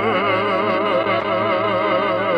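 A woman's singing voice holding one long note with a wide, even vibrato, over a steady instrumental accompaniment in a Georgian pop song.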